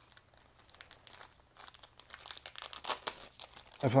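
Thin clear plastic bag crinkling and crackling as it is slit with a utility knife and pulled open, a quick run of small crackles starting about a second and a half in.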